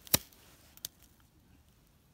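Pruning secateurs snipping through a persimmon stem once, a single sharp snip just after the start, cutting the frost-dried wood back to live wood. A fainter click follows a little under a second in.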